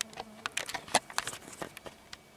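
Rustling and crackling of dry grass and brush: a quick, irregular run of sharp crackles that stops near the end.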